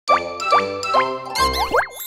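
Short cartoon logo jingle: three bouncy plopping notes about half a second apart, then a quick twinkly flourish and a rising sliding tone near the end.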